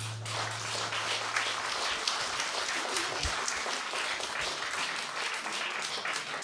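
Audience applauding steadily at the end of a song, with the low note of the final acoustic guitar chord ringing under it for the first second and a half.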